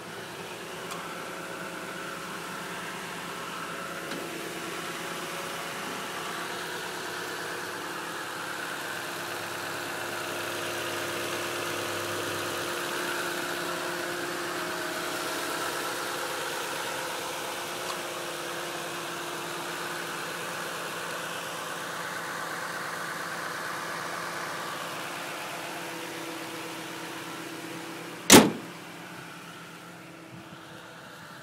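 2010 Toyota Tundra pickup's engine idling steadily, with one sharp, loud knock near the end.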